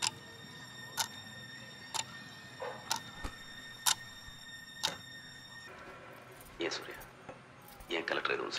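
A clock ticking about once a second, six ticks in all, over a faint high steady tone. The ticking stops about five seconds in.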